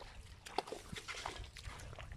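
Hands working in wet paddy mud and shallow water: a few short, scattered squelches and splashes.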